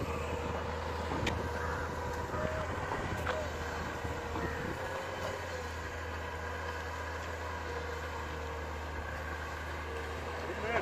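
Excavator's diesel engine running steadily in the distance, a low, even rumble with a faint steady tone over it and faint voices in the background.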